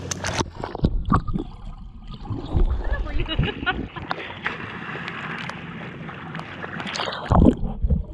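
Pool water splashing and sloshing against a waterproof camera held at the surface, with many small irregular clicks and splashes. Near the end comes a louder low surge of water as the camera goes under.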